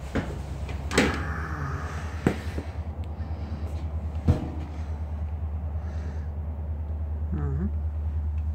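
Trailer base cabinet under a stainless three-compartment sink being opened, with a few sharp knocks and clicks, the loudest about a second in and another just after four seconds, over a steady low rumble.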